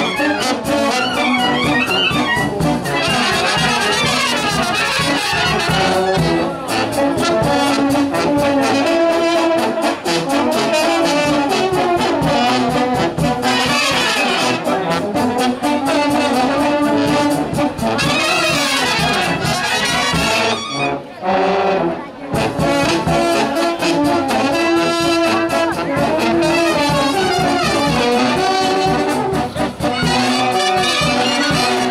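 Romanian village brass band (fanfară) playing: trumpets, trombones and tubas over a bass drum beat. The music drops out briefly about two-thirds of the way through, then carries on.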